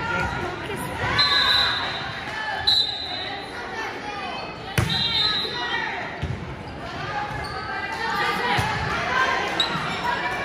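Volleyball being hit, with a few sharp smacks echoing in a large gym, over the voices of players and spectators calling and chattering. Short high squeaks come in between.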